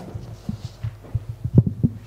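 Handling noise of a handheld microphone: about half a dozen dull, irregular low thumps over a steady electrical hum from the PA system.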